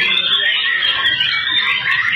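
Many caged songbirds singing at once in a loud, unbroken chorus of high whistles and fast trills, the birds in full, vigorous song.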